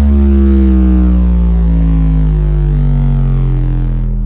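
Dance-music bass drop played through a stacked sound system of 24 subwoofers: a deep sustained sub-bass note, very loud, with a synth tone sliding slowly down in pitch over it.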